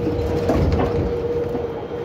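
81-553.3 metro train standing at a station with its doors open, giving a steady mid-pitched hum over a low rumble.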